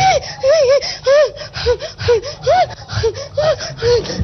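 A woman crying out in short, pitched, gasping sobs, each rising and falling, about three a second, close to a microphone.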